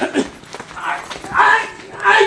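Three short, loud vocal cries, the last and loudest about three-quarters of the way through.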